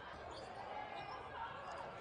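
Faint court sound of a basketball game in an arena without a crowd: a steady low background with a ball bouncing.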